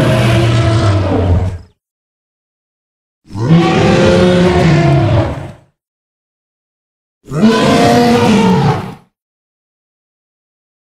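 Tarbosaurus roar sound effect, played three times: a roar that ends under two seconds in, then two more of about two seconds each, every one starting suddenly, with dead silence between.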